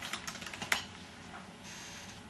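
Keystrokes on a computer keyboard, a quick run of clicks in the first second with one sharper click among them, as a title is typed in.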